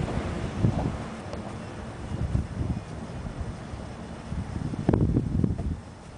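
Wind buffeting the camera microphone in uneven gusts, a low rumble that swells strongest about five seconds in and drops away just before the end.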